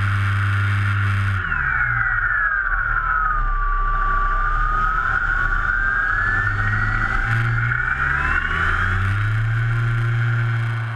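Motor and propeller of a radio-controlled model plane in flight, heard from a camera mounted on its wing. The high whine drops in pitch after about a second and a half and climbs back up over the second half as the plane manoeuvres, over a steady low hum.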